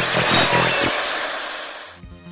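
A loud, steady rushing noise like static, with faint traces of a voice in it, fading down over the two seconds.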